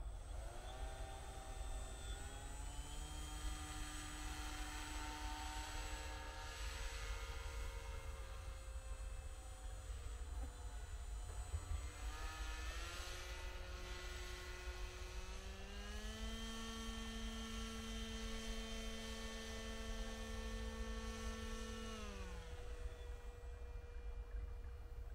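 RC paramotor's motor and propeller running with a pitched whine that rises about half a second in, rises again to a higher steady note partway through, then winds down near the end. A steady low rumble lies underneath.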